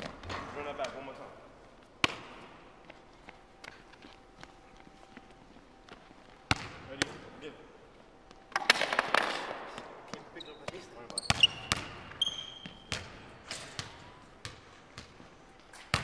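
Basketball bouncing on a hardwood gym floor: separate hard bounces at irregular gaps, with a busier noisy stretch about halfway through.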